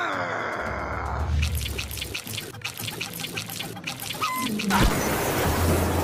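Cartoon soundtrack of sound effects over background music: a falling pitched call fades at the start, then a run of quick clicks, about three a second, gives way near the end to a loud rushing noise.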